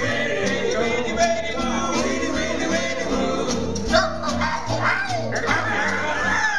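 Small live jazz band playing an instrumental chorus, with a saxophone carrying the melody over an upright bass line and guitar.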